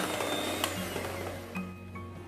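Electric hand mixer whirring as it beats ghee and powdered sugar in a glass bowl, dying away within the first second or so, over soft background music.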